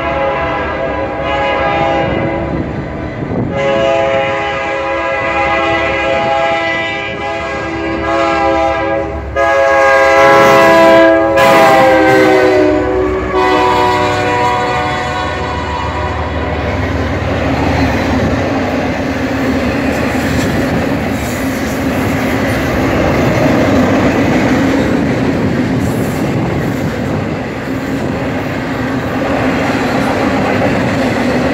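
Diesel locomotive multi-tone air horn sounding several blasts as a freight train approaches, the last one long, loudest and dropping in pitch as the lead BNSF SD70MAC locomotives pass. From about halfway on, there is the steady rumble and wheel clatter of double-stack intermodal container cars rolling by.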